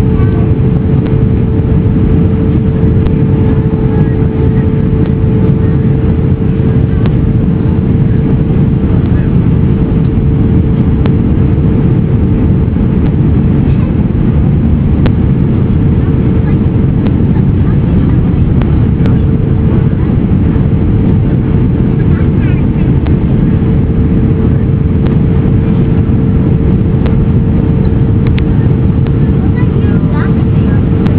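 Steady airliner cabin noise during descent: a loud, even low rumble of engine and airflow with a constant droning tone running through it.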